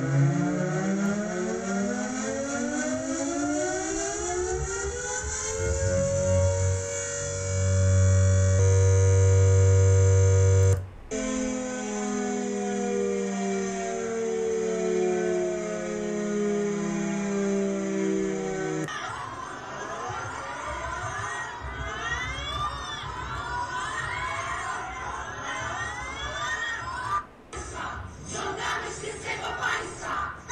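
Electric motor-driven air-raid siren winding up, its howl rising steadily in pitch for about five seconds and then holding steady. It cuts out briefly about eleven seconds in, then holds a lower steady tone. After about nineteen seconds it gives way to a jumble of wavering, rising and falling sounds.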